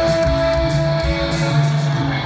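Live rock band playing through a concert PA, heard from the audience: a long held note over bass and drums.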